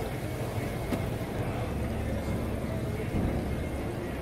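Steady low background rumble with faint voices in the distance.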